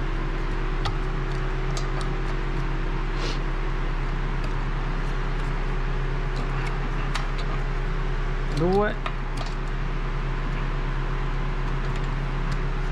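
Car's electric radiator cooling fan running steadily with the engine off, its normal after-run once the engine has been worked hard, with light metallic clicks from a wrench on the wheel bolts. One short rising sweep about nine seconds in.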